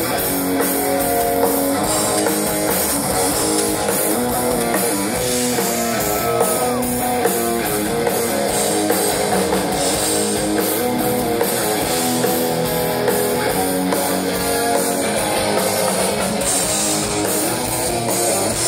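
A live metal band playing through a PA: distorted electric guitars over a drum kit, heard from within the audience in a reverberant hall.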